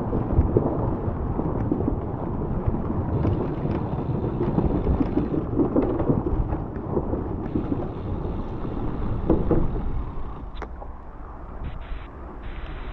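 Rumbling wind noise on the camera microphone of a road bike rolling through a covered wooden bridge, with a single sharp knock about ten and a half seconds in, after which it grows quieter.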